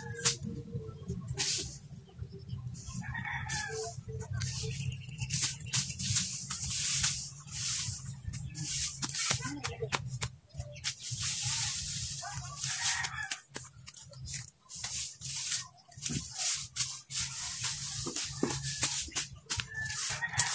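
A rooster crowing twice, about three seconds in and again near the middle, over repeated rustling and swishing of dry grass being pulled and cut by hand.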